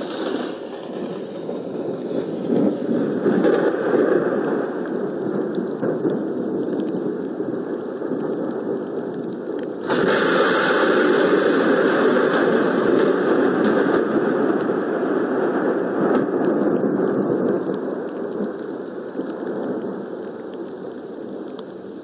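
Thunderstorm: continuous rumbling thunder, with a sudden loud clap about halfway through that rolls on and slowly dies away.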